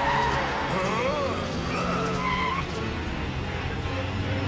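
Cartoon sound effects of a small scooter skidding and swerving, with tyre squeals in several short rising-and-falling glides over a steady low hum.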